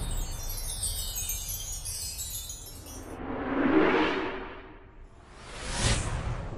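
Intro sound effects for an animated logo: a shimmering cascade of high chime tones sliding downward over the first three seconds, then two whooshes that swell and fade, one about four seconds in and a louder one near the end.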